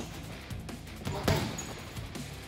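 Gloved punches landing on a hanging heavy bag: a light hit about a quarter of the way in and one hard, loud thud about two-thirds through, over background music.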